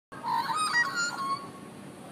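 Australian magpies singing: a short run of varied warbling notes that stops about a second and a half in, leaving a low steady background.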